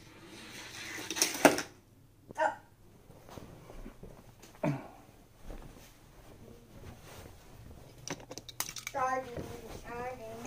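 Short children's vocal exclamations in a small room, a few seconds apart, with a few sharp clicks near the end.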